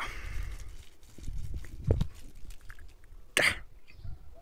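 A person coughs once, briefly, about three and a half seconds in, over faint outdoor background noise with a soft thump about two seconds in.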